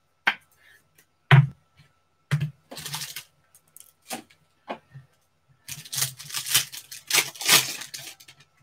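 Foil trading-card pack wrappers crinkling and being torn, with sharp clicks of cards being handled. There are short rustles around the middle and a longer crinkling stretch near the end.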